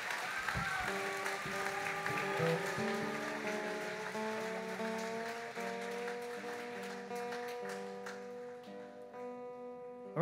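Acoustic string band (guitars, fiddle, banjo) holding slow, sustained notes at the close of a song, gradually fading, with audience applause.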